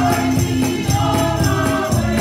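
Gospel praise song: a small group of voices singing together over a steady rhythmic beat.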